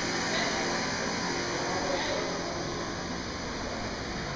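Steady hum of a busy museum gallery: an even background noise with indistinct voices of passing visitors.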